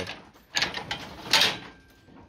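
Two short scraping rattles from the wooden cattle chute, the second one louder, about a second and a half in.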